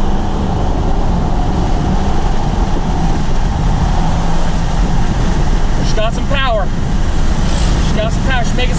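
Chevrolet Silverado's Duramax 6.6-litre V8 turbo-diesel pulling hard under full throttle, heard from inside the cab as a steady low engine drone mixed with road noise while the truck accelerates up to highway speed.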